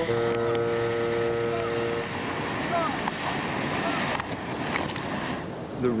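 Whitewater rapids rushing around an inflatable raft, with brief shouts from the paddlers about three seconds in. A steady held tone fills the first two seconds.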